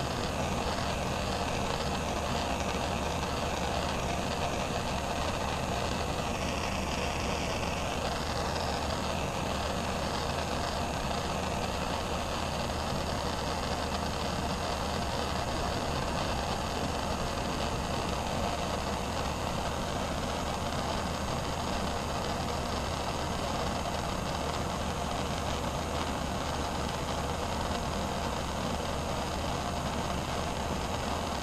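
Hand-held propane torch burning with a steady hiss as its flame is held against the can.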